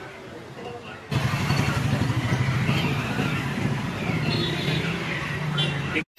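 Street traffic noise: a motor vehicle engine running close by, coming in suddenly about a second in over quieter street ambience, with voices mixed in.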